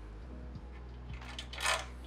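Quiet background music with a few faint clicks of a bolt being started by hand into the 3D printer's frame, and a short hiss near the end.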